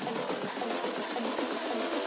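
Soundtrack music with fast drum and percussion hits, playing through the hall's loudspeakers with little bass.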